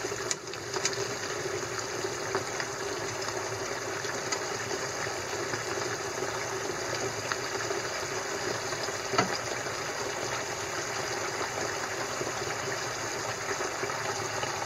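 A pan of beef tendon stew simmering steadily on the stove, with a few sharp clicks of metal tongs against the pan and bowl, the loudest about nine seconds in.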